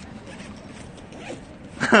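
Low, steady outdoor background noise, then a man bursting into laughter near the end.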